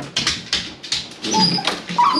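Jack Russell terrier whimpering, with a few brief high whines about one and a half seconds in, among scattered clicks and taps.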